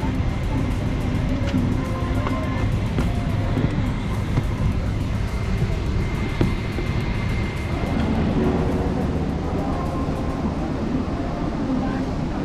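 Steady low rumble of an airliner cabin.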